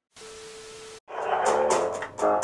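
About a second of TV-style static hiss with a steady hum tone, cutting off abruptly, then music with plucked guitar begins.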